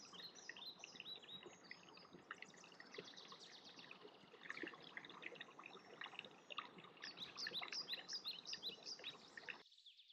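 Faint chorus of small birds chirping, many short overlapping calls, busier in the last few seconds and cutting off suddenly just before the end.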